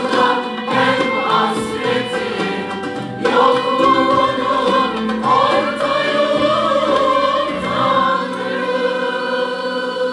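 A mixed choir of men and women singing a Turkish art music song in unison, accompanied by a traditional ensemble of violin, oud, kanun and other instruments.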